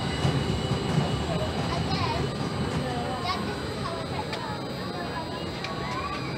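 Junior roller coaster train running along its steel track, a steady rumble of wheels on rail, with faint voices of the crowd around it.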